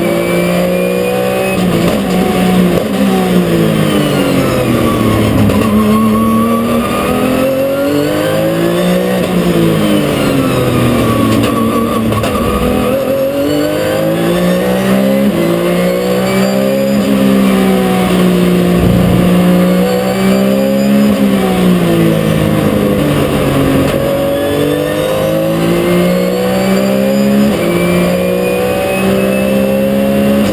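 Porsche 911 GT3 Cup race car's flat-six engine heard onboard at racing speed, repeatedly revving up through the gears and dropping in pitch as it slows for corners, about five cycles of rising and falling.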